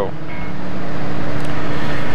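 Steady rushing hum of a workshop fan, with a low steady drone under it.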